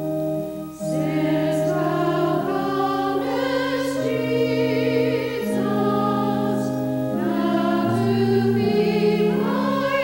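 A choir singing slow, sustained chords, the voices wavering with vibrato, with a short break between phrases just under a second in.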